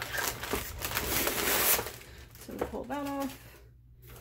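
Thin clear plastic protective film rustling and crackling as it is handled on the face of an LED light pad, for about the first two seconds.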